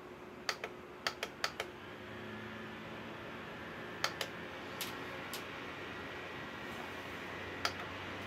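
AC Infinity 6-inch clip-on oscillating fan being turned up with a quick series of button clicks, then running at high speed with a steady airflow and motor hum that steps up about two seconds in; a few more clicks come later.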